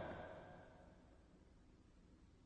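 Near silence: the fading tail of a man's voice in the first half second, then faint room tone.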